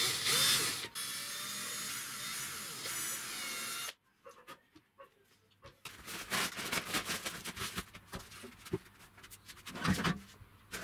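Cordless drill spinning up and drilling into the corner of a wooden frame, running steadily for about four seconds before stopping abruptly. After a short pause, a cloth is shaken out and spread on a workbench, with rustling and scattered light knocks.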